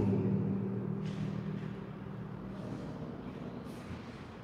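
Quiet room tone in an empty apartment: a low steady hum that slowly fades, with faint brief brushing noises about a second in and again near the end.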